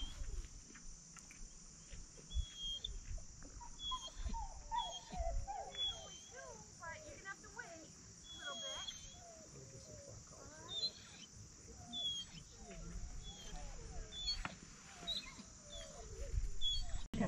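A German shorthaired pointer whining in many short, wavering squeals that rise and fall, thickest in the middle of the stretch: an eager dog held at sit before being sent on a water retrieve. Short high chirps recur every second or two in the background.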